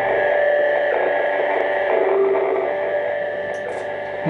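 Closing drone of a live rock band: held electric guitar tones through effects pedals hang on and slowly fade after the low bass drone cuts out just after the start. The first scattered claps come near the end.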